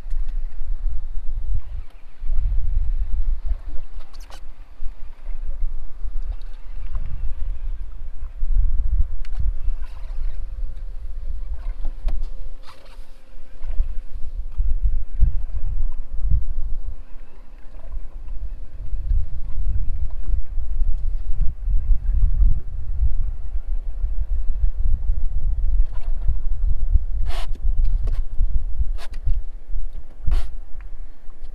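Wind rumbling over the camera microphone in gusts, with water lapping against a small boat's hull. There are a few sharp clicks near the end.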